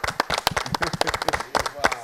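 A small group of people applauding: many quick, irregular hand claps from several pairs of hands at once.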